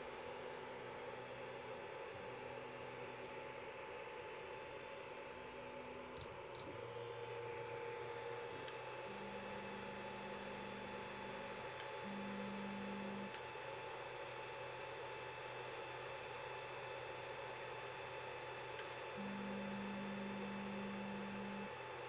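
Creality Ender 5 Plus stepper motors, driven by the silent V2.2 mainboard, auto-homing the axes: a faint low hum that changes pitch in stages as each axis moves and stops, with a few small clicks, over the steady whir of the cooling fans. The motor noise is very quiet, the sign of the silent stepper drivers.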